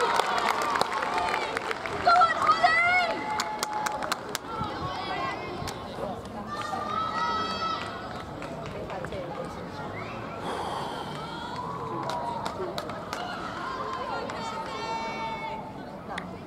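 Spectators' voices: overlapping chatter and a few high-pitched calls, with scattered claps dying away in the first few seconds.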